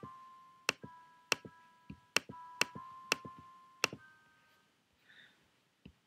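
Mouse clicks, each followed by a short synthesized piano note from the Gervill soft synth's acoustic grand piano preset, sounding as notes are drawn into the piano roll. About half a dozen notes at different pitches come in the first four seconds, then it falls quiet.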